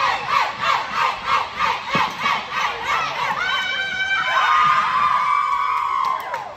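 A group of young girls chanting in rhythmic unison shouts, about two and a half a second, then breaking into one long shared scream of cheering.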